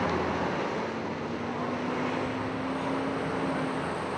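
City street traffic noise: a steady hum of passing cars, with one engine note held and slowly rising from about a second in until near the end.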